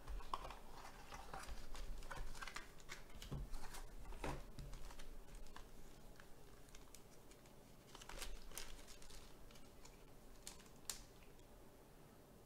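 Hands opening a cardboard trading-card box and handling a black plastic sleeve holding a graded card slab: scattered light clicks, scrapes and plastic crinkles, busiest in the first few seconds.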